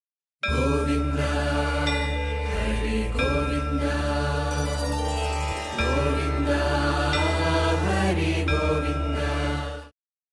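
Devotional intro music: a chanted mantra over a steady low drone. It starts about half a second in, dips briefly about halfway through, and fades out just before the end.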